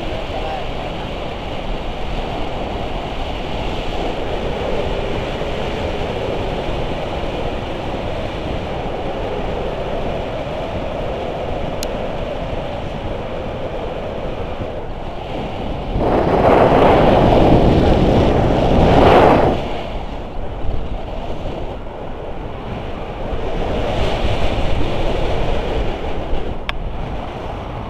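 Wind buffeting a handheld camera's microphone in tandem paraglider flight: a steady rushing, with a louder gust about sixteen seconds in that lasts three or four seconds.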